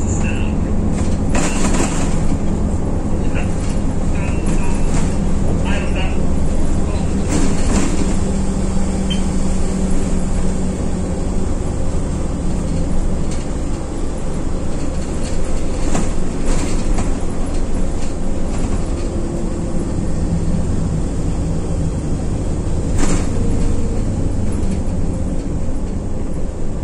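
Inside a moving city bus: steady engine and road noise, with a few sharp rattles or knocks from the cabin.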